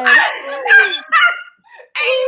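Several women laughing loudly together, with high-pitched shrieks and whoops.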